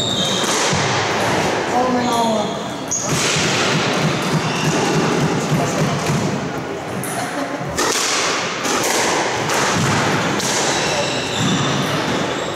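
Squash rally: rackets striking the ball and the ball thudding off the court walls, several sharp hits at uneven intervals.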